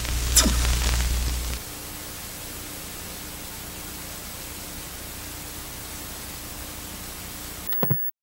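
Analog TV static sound effect: a steady hiss, opening with a louder low hum and a quick downward sweep in the first second and a half, and a few brief glitchy sounds right at the end.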